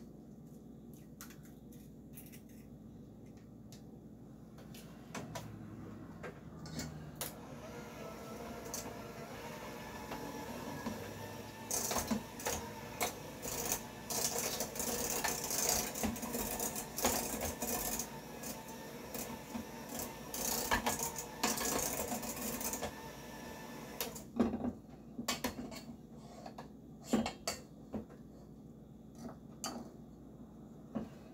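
Electric hand mixer running in a stainless steel bowl, beating an egg into creamed butter and sugar, its beaters clattering against the metal. It runs loudest for about ten seconds in the middle. A few sharp knocks follow near the end.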